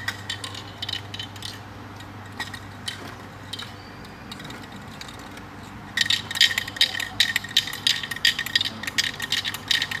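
Handheld metal rattle clinking a few times, then shaken hard and fast from about six seconds in, a rapid run of loud rattling clicks. It is a noise distraction for a dog holding a sit.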